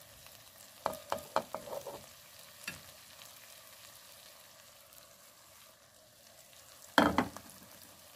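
Cooked urad dal sizzling faintly in oil in a pot as ginger strips and garam masala are added. A quick run of sharp clicks comes about a second in, and a louder knock near the end.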